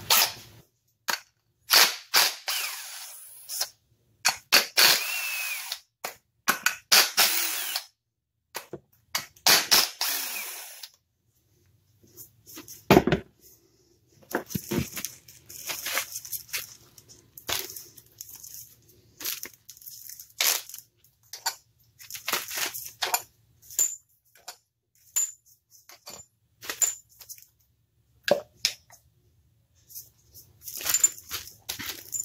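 Irregular runs of sharp clicks, clacks and knocks from hand tools and metal and plastic engine parts being handled and unfastened, with short quiet gaps between them.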